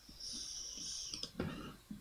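A man's breath drawn in through the nose, an airy hiss lasting about a second, followed by a few faint clicks and a soft thump.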